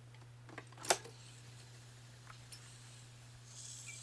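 A low steady hum, with one sharp click about a second in and a few fainter ticks.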